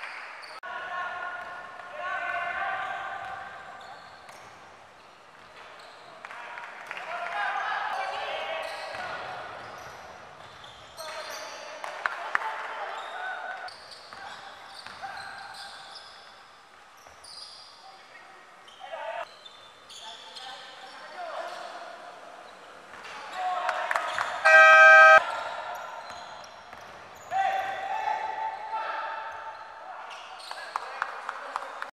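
Live indoor basketball game: the ball bouncing on a hardwood court, sneakers squeaking and players calling out in a large, echoing hall. About 25 seconds in, a loud horn-like buzzer sounds for under a second.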